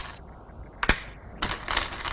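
Go stones being set onto a demonstration board by hand, sharp clicks: one about a second in, then several in quick succession near the end.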